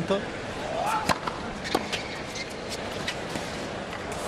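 Tennis ball struck by rackets: a serve about a second in, its return just over half a second later, then fainter hits about a second apart, over the steady noise of a stadium crowd.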